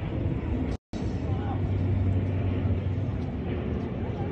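Steady low hum and rumble of outdoor city noise with faint, indistinct voices. The sound cuts out completely for an instant just under a second in.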